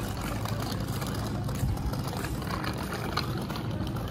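A small motorbike engine running steadily, a low even hum.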